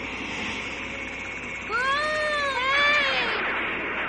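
Synthesized cartoon sound effects for a giant spinning disc: a steady whooshing hiss, then, from under two seconds in, two pitched electronic wails one after the other, each rising and then falling.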